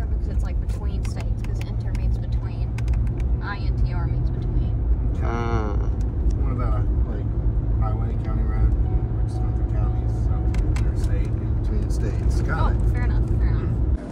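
Steady low road and engine drone inside a Chevrolet truck's cab at cruising speed, with short bits of voices over it, one clear vocal sound about five seconds in.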